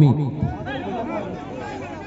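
Speech: a man's voice calls out a player's name at the start, then overlapping chatter from spectators.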